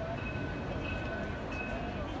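Steady outdoor city ambience heard from a rooftop: a continuous low rumble of traffic, with faint voices and thin high tones that come and go.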